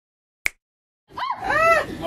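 A single sharp click, then after a pause a few high-pitched cries that rise and fall in pitch.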